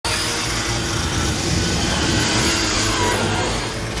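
Loud, steady mechanical whirring and rumbling of spinning buzzsaws, a cartoon sound effect, starting abruptly at the very beginning.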